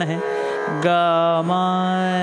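Male voice singing the sargam syllables "ga, ma" of Raag Bageshri, a Hindustani raag. After a short syllable he holds one long, steady note from about a second in.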